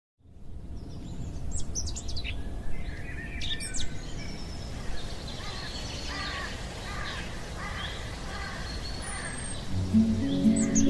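Songbirds chirping and singing, with a couple of quick high calls in the first few seconds and a run of repeated notes later, over a steady low background noise.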